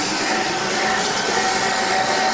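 Background music over steady arena ambience, with one held tone running through it.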